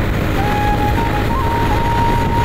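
Motorcycle ride at road speed: steady wind noise buffeting the phone's microphone over the engine and tyres. A thin, steady high note comes in about half a second in and holds, wavering slightly in pitch.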